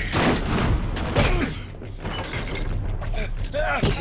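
Action-film fight sound effects: a loud crash of a body hitting furniture, with breaking glass over the first second and a half, then further impacts. A man laughs about a second in.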